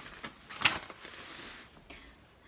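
A picture book's paper page being turned: a faint rustle, with a light flick just over half a second in.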